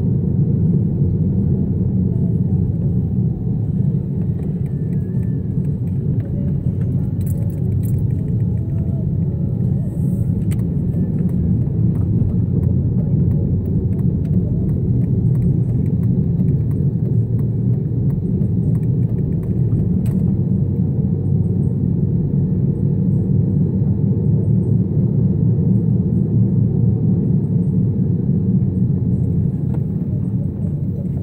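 Steady low rumble of a car driving, heard from inside the cabin: engine and tyre noise on the road, with a few faint clicks.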